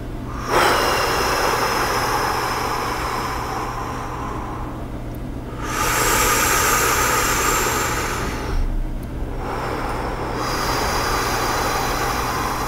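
A person's slow, deep breaths close to the microphone, three long airy hisses each lasting a few seconds with short pauses between. This is paced breathing in time with a heart-rate-variability app's guide.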